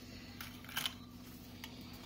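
A few faint light clicks and taps, about half a second apart, as Oreo biscuits are laid into milk in an aluminium tin, over a steady low hum.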